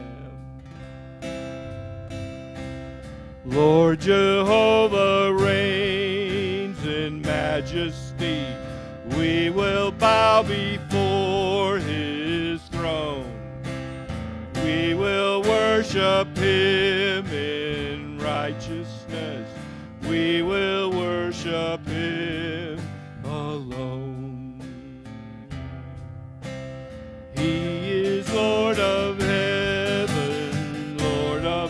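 Live worship band playing a slow hymn: a man singing with a wavering vibrato over strummed acoustic guitar, bass guitar and drums, phrase by phrase with brief instrumental gaps between sung lines.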